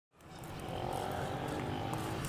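Steady distant roar of a Russian military jet's engines overhead, fading in at the very start.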